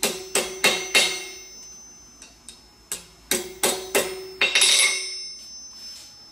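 A hammer tapping a square fine-silver bar straight on a steel anvil. It gives four quick light blows, a pause, then a second run of blows about three seconds in, each leaving a short metallic ring, and ends in a brief clatter about five seconds in.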